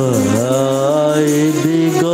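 A song: a single voice holding long notes that dip and slide in pitch, with music under it.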